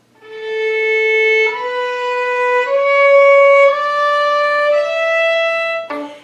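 Violin played slowly in separate bows: five sustained notes of about a second each, climbing step by step, each held so its intonation can be heard clearly.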